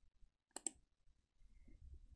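Computer mouse button clicked: two short sharp clicks close together, choosing 'Set Key' from a right-click menu to keyframe a value.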